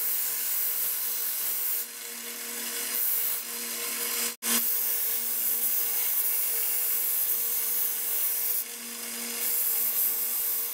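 Small bench belt sander running with a steady motor hum, its belt grinding the galvanized coating off a steel pipe down to bare steel. The grinding swells and eases as the pipe is pressed on and moved across the belt, and it cuts out for an instant about halfway.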